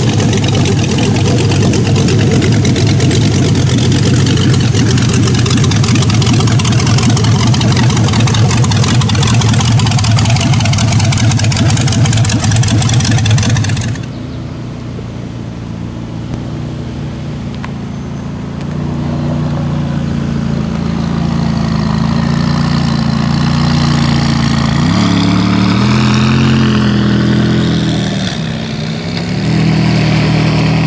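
Cars driving slowly past. For about the first half a hot rod's engine gives a loud, steady low drone that stops abruptly. After that a McLaren sports car's twin-turbo V8 approaches, its pitch rising and falling as it is revved.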